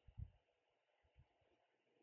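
Near silence: room tone, with a couple of faint low thumps.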